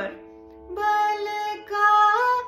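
A woman singing a short demonstration phrase over a steady shruti box drone pitched in A. The drone sounds alone at first, then she holds one steady note, steps up to a higher one and glides up briefly near the end, showing how to touch a higher note lightly.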